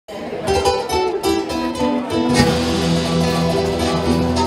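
Live Andean folk band music opening with quick plucked notes on acoustic guitar and a small charango-type string instrument. About two and a half seconds in the fuller band comes in with long held notes.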